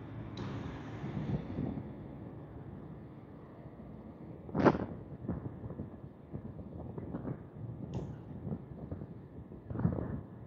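Pliers working the wire connections off a trailer's turn-signal wiring: scattered small clicks and handling noises, with a sharp snap about halfway through and another near the end.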